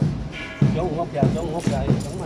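A steady beat of dull thuds, a little under two a second, keeping time for a rifle drill team, with people's voices over it.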